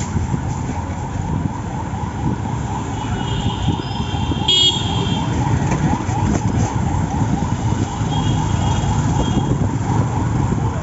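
City street traffic heard from a moving cycle rickshaw: a steady rumble of car and motorcycle engines and tyres. A vehicle horn sounds from about three to five seconds in, and a fainter horn near the end.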